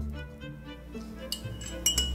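A metal bar spoon clinking against a glass Irish coffee mug as the coffee is stirred, a run of light clinks starting past the middle, over quiet background music.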